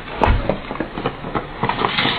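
Rushing outdoor noise with many scattered clicks, heard through a security camera's narrow-band microphone, with a dull low thud about a third of a second in.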